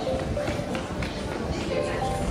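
Footsteps on a paved walkway and indistinct voices, with a few soft held notes of background music.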